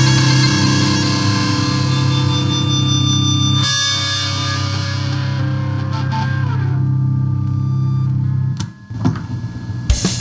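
Instrumental metal music: a distorted electric guitar holds a sustained chord that thins out after about four seconds, then briefly drops away near the end.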